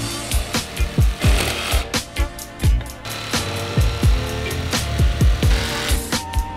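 Jigsaw blade cutting through a clamped wooden board, its buzz heard under background music with a deep bass beat.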